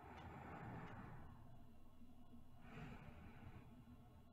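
A woman's slow, soft breathing, faint and close to the microphone: two breaths about a second each, the second starting about two and a half seconds after the first, in the even rhythm of someone sleeping.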